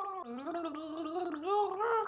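A woman gargling a mouthful of soup with her voice: one long, wavering gargle whose pitch rises a little toward the end.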